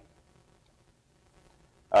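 Near silence: room tone in a pause, until a man's voice starts with an 'uh' just before the end.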